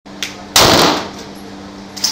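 A single pistol shot about half a second in, its report ringing briefly off the walls of an indoor shooting range, with a faint click before it and another sharp shot right at the end. A steady low hum runs underneath.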